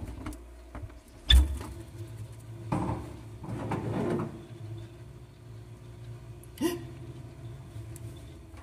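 Refrigerator door pulled open with a thump about a second in, followed by rustling as things inside are handled, and a sharp click later on.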